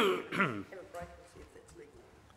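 A man clearing his throat: a loud rasp at the start and a second, smaller one about half a second in, then trailing off.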